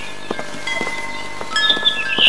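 Wind chimes tinkling: scattered ringing tones at several different pitches, each starting at a different moment and ringing on, with light clicks between them.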